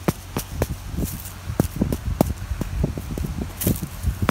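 A plastic seedling plug tray being knocked and brushed to shake out dead seedlings' dried soil plugs: a string of irregular light knocks and rustles.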